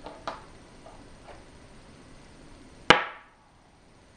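A go stone snapped down onto a wooden go board: one sharp click with a short ring, about three seconds in. Before it come a few soft clicks of stones being handled.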